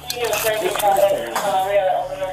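Handcuffs and duty gear clinking and rattling as a handcuffed man is pushed into a seat, under a man's indistinct, strained voice.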